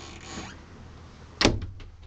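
A camper's wooden bathroom door shutting with one sharp knock about one and a half seconds in, followed by a few faint clicks.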